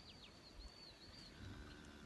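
Near silence, with a small bird chirping faintly: a short run of high, quick notes in about the first second.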